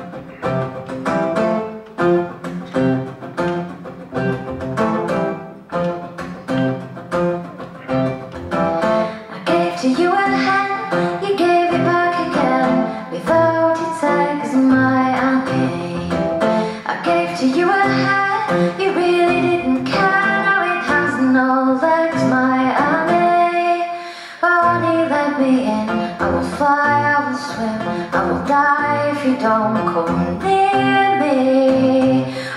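Live folk band of acoustic guitar, bouzouki-type string instrument, button accordion and double bass playing a plucked, rhythmic intro. The band fills out about ten seconds in, and a woman sings the verse over it.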